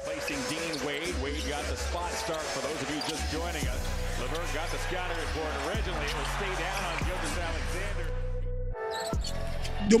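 Basketball game audio: a ball dribbled on the hardwood, with crowd noise and a voice, over background music with a low bass line. The sound drops out briefly near the end at a cut to another clip.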